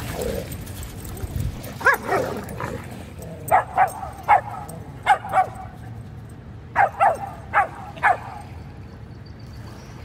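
A dog barking in short yips during rough play with other dogs, about ten barks in quick bursts from about two seconds in until about eight seconds in.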